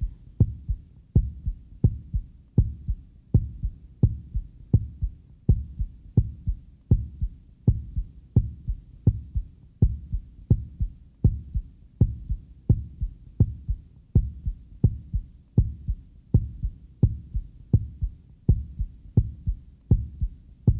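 Heartbeat sound effect: a steady double 'lub-dub' thump, about one and a half beats a second.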